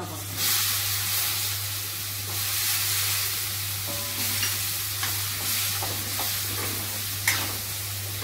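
Drumstick pieces dropped into hot oil in a kadai, sizzling and frying as they are stirred with a spoon; the sizzle starts suddenly just after they go in and holds steady. A short sharp tap of the spoon about seven seconds in.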